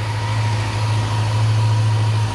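Honda CB400 Super Four Hyper VTEC Revo's inline-four engine idling steadily.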